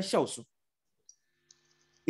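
A man's preaching voice trailing off in the first half-second, then near silence broken by two faint clicks, about a second and a second and a half in.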